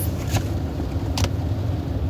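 Steady low rumble of a car heard from inside its cabin, with two faint clicks, about a third of a second in and just over a second in.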